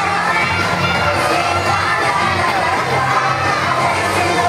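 Many young children's voices shouting and cheering together, over pop dance music with a steady bass.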